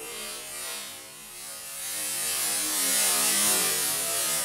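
Lycopodium (club moss) spore powder burning in a line along the floor: a rushing hiss of flame that builds over about three seconds and begins to fade near the end.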